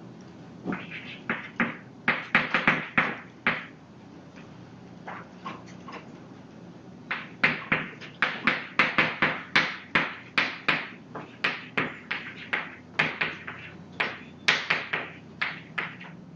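Chalk writing on a blackboard: quick taps and short scratches of the chalk strokes, in a short burst over the first few seconds and a longer run from about seven seconds in.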